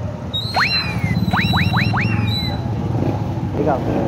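Five quick whistle-like rising sweeps between about half a second and two and a half seconds in; the first and last each glide down again afterwards. Underneath is the steady low rumble of a vehicle engine running.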